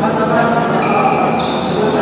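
Badminton hall sounds: shuttlecock hits and footfalls on the courts under a steady wash of indistinct voices, with two held high squeaks in the second half.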